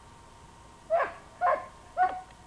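A herding dog barking sharply three times, about half a second apart, starting about a second in.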